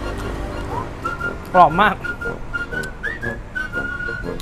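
A whistled melody, likely part of background music: a held high note with short breaks and a brief upward slide, running on under a short spoken remark.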